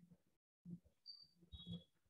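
Near silence, with a few faint, brief sounds and two short, thin high-pitched tones just after the middle.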